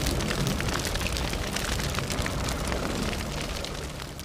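Cinematic logo-intro sound effect: a deep rumble under dense crackling, fading away near the end.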